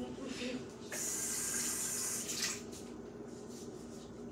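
Kitchen tap turned on and running for about a second and a half, a steady hiss of water that starts and stops suddenly.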